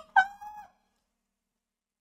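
Tail of a burst of hearty laughter: one drawn-out, high-pitched laughing cry that stops under a second in.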